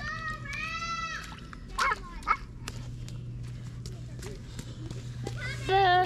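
A toddler's high, wordless sing-song calls in the first second, with a few shorter cries around the middle and near the end, between light splashes and taps of rubber boots stepping in a shallow muddy puddle.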